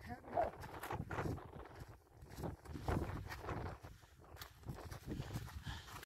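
Faint, indistinct voices of people on the trail, with scattered scuffs and knocks of footsteps on loose rock.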